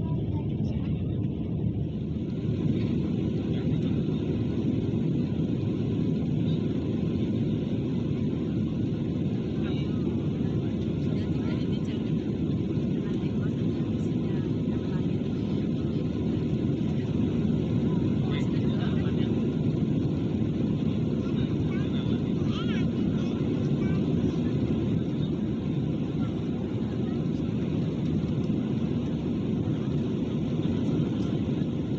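Steady low cabin roar of a jet airliner's engines and rushing air, heard from a window seat while the plane climbs out shortly after take-off, with faint passenger voices underneath.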